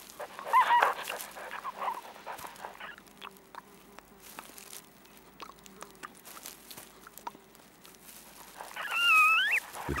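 Red panda giving two short, high, wavering calls: one about half a second in and a louder one near the end. Faint rustling and small clicks in dry den bedding come between them.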